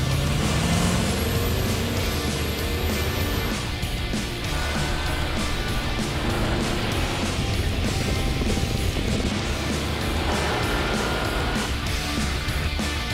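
The engines of two pickup trucks, a Ford F-150 2.7-liter EcoBoost V6 and a Ram 3.0-liter EcoDiesel V6, pulling away at full throttle from a standing start while each tows a 7,000-pound trailer. The engine note rises over the first second, then holds a steady heavy drone under load, with music mixed underneath.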